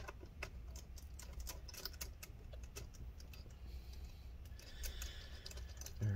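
Light, irregular clicks and ticks of a small Torx T5 screwdriver working screws out of a laptop's aluminium bottom cover, faint throughout.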